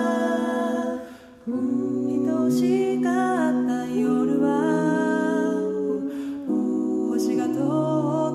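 Five-voice a cappella group singing held chords over a low sung bass line, with a short break about a second in before the chords come back.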